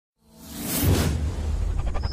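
Intro whoosh sound effect swelling in about a quarter second in over a deep bass drone, with a run of quick ticks near the end.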